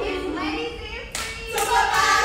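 Group hand clapping during a step routine, with a sharp clap about a second in among voices calling out. The voices get louder near the end.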